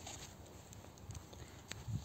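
Faint outdoor background with a few light, sharp clicks, the clearest near the end.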